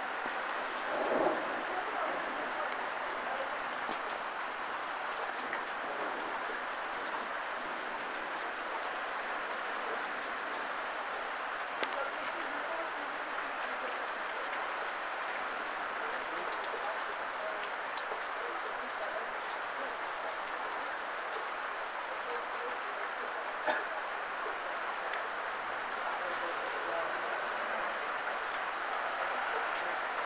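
Heavy rain falling steadily on a street and roofs. About a second in, a car's tyres hiss through standing water as it passes. Two sharp clicks come later, one near the middle and one past two-thirds of the way.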